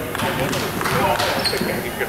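A basketball bouncing on a hardwood gym floor during play, a few bounces, with spectators talking over it.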